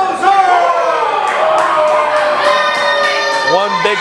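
A ring announcer's voice, one long drawn-out call held and slowly falling in pitch for about three seconds, over a crowd shouting and cheering; short shouted calls come in near the end.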